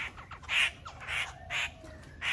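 Caged laughingthrush giving four short, harsh calls, about two a second.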